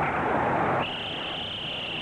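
Stadium crowd noise, then, a little under a second in, a referee's whistle blowing one long high note that lasts just over a second, whistling the play dead after the tackle.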